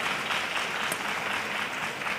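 Arena crowd applauding steadily after a table tennis point is won.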